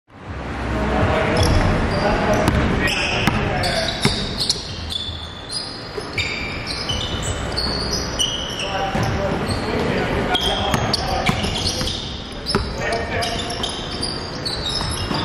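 Indoor basketball game in a gymnasium: sneakers squeaking sharply on the hardwood court, the ball bouncing, and players' voices calling out.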